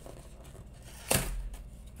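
A taped cardboard shipping box being forced open by hand. Quiet handling, then one sharp rip of cardboard about a second in as the box gives way.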